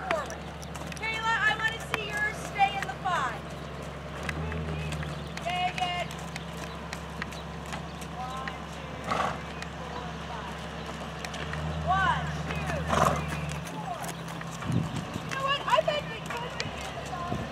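Horses' hoofbeats on a soft dirt arena as they walk and trot, with voices speaking now and then over a steady low hum.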